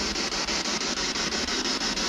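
Steady radio static from a spirit box scanning through radio frequencies: a hiss with a fast, even flicker as it sweeps from station to station.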